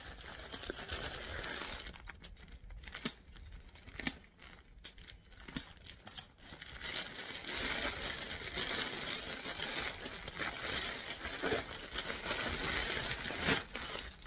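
Plastic courier mailer bag being opened by hand. Scattered crackles and tearing of the plastic come in the first half, then steady crinkling from about halfway as the bag is pulled open and the contents are drawn out.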